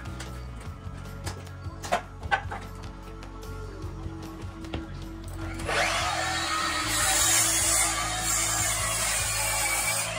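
Electric miter saw spinning up about halfway through and cutting a wooden 2x4, loud for the last four seconds, after a couple of knocks as the board is set on the saw. Background music plays throughout.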